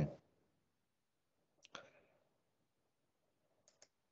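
Computer mouse clicks, faint, in two quick pairs: one pair a little under two seconds in, the other near the end.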